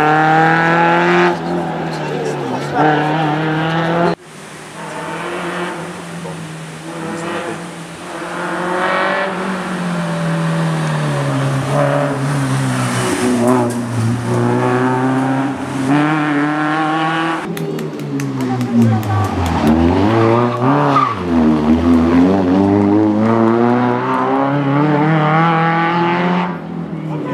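Peugeot 309 GTI16 rally car's four-cylinder engine revving hard and dropping back again and again through gear changes and braking, in several separate passes that change abruptly.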